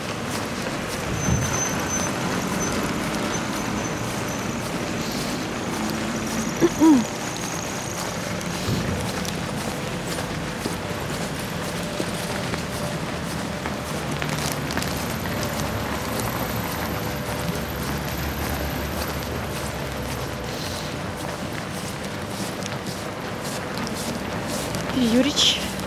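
Steady street noise of car traffic, with a brief voice about seven seconds in.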